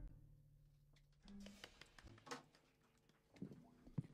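Near silence: room tone, with a low hum fading out in the first second and a few faint, brief soft sounds.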